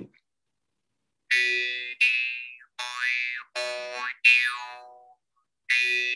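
Vietnamese đàn môi mouth harp struck five times, each twang ringing and fading with a strong overtone sliding in pitch as the player's mouth shape changes to voice the vowels a, e, i, o, u. Another twang starts near the end.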